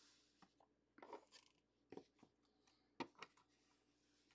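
Near silence with a few faint clicks and rustles of trading cards in clear plastic holders being handled and set down.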